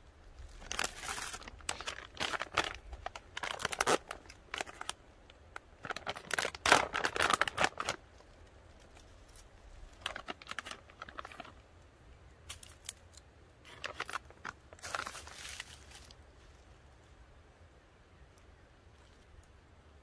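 Plastic-foil snack packet crinkling as it is handled and opened by hand, in irregular bursts. The loudest run is in the first half, with shorter rustles later and quiet near the end.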